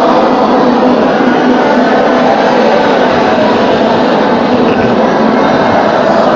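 A large group of voices reciting a Quran verse together in unison, blending into one continuous sound with no pauses.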